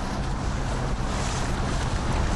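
A boat under way on the open sea: its engine runs with a steady low hum, under the rush of water and wind buffeting the microphone.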